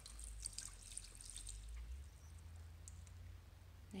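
Faint sound of water being poured onto the soil of a potted fern, splashing through the fronds for about two seconds, then thinning to a few drips.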